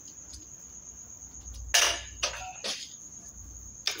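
Crickets chirping in a steady high drone, with one loud, sharp impact about two seconds in, followed by a couple of fainter clicks.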